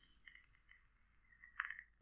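Faint hiss and crackling from an e-cigarette's coil firing as e-liquid vaporises during a draw, with a denser cluster of crackles about one and a half seconds in.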